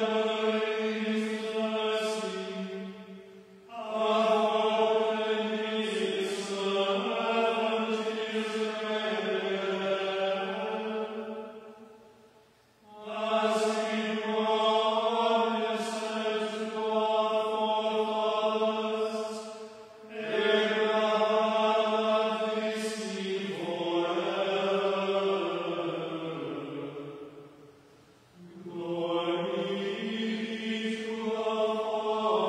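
A small group of voices chanting plainchant in unison, held mostly on one steady reciting note. The chant comes in phrases of about eight seconds, each ending in a brief pause; the last phrase falls in pitch before its pause.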